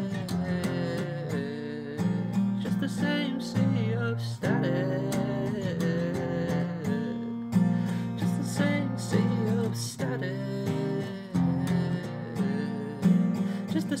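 A song: steady strummed chords with a voice singing a short phrase that returns every three to four seconds.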